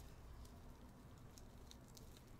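Near silence: room tone, with a few faint clicks from gloved hands handling a cloth doll.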